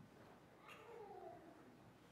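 Near silence: quiet room tone, with one faint, short whine falling in pitch about a second in.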